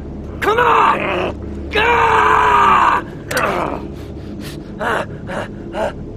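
A man crying out in pain: two long, loud anguished cries, then shorter groans and gasps.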